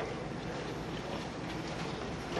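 Steady background noise of a school hallway, a low hum and hiss with no distinct events.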